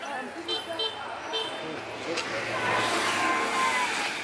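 A motor vehicle passing on the road, growing louder through the second half, with a steady tone for about a second near the end.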